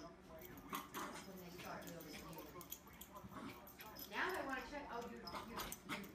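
A small dog whimpering and yipping during play, mixed with a person's soft voice.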